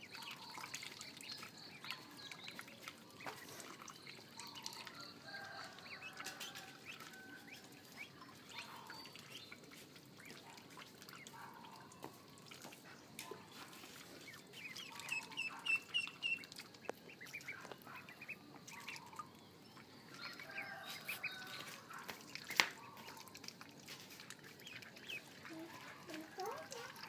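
Ducklings peeping over and over, with a quick run of peeps about fifteen seconds in and one sharp click late on.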